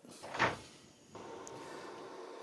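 A single short knock or scrape about half a second in, then a faint steady hiss.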